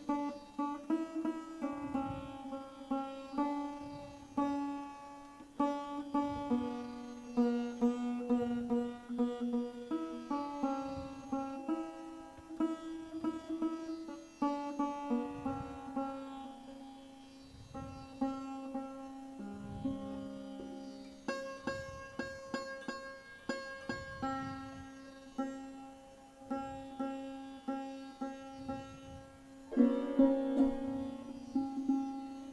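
Sarod being tuned: its metal strings plucked one note at a time, about one a second, each note ringing and fading while the same few pitches are tried again and again.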